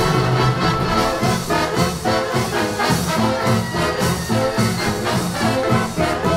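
Live swing big band playing: a brass section of trumpets and trombones and a saxophone section over piano, guitar, bass and drums, with a steady beat.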